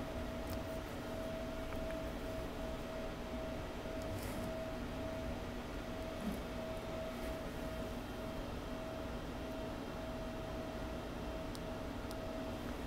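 Quiet workshop room tone: a steady faint electrical or fan hum with a thin higher tone running through it, and a couple of faint soft ticks as the wires of a small transformer are handled.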